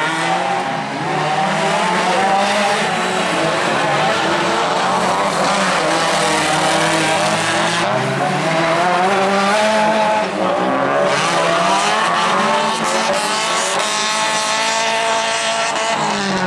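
Autocross racing cars' engines revved hard, several at once, each pitch climbing and then dropping at a gear change over and over.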